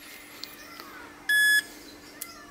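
A single short electronic power-up beep, one steady high tone about a third of a second long, a little over a second in, from Fat Shark FPV goggles fitted with a FuriousFPV True-D v3.5 diversity receiver module as they switch on.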